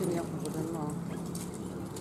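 Hoofbeats of a single horse pulling a marathon carriage through a driving obstacle, a loose clip-clop, with voices in the background.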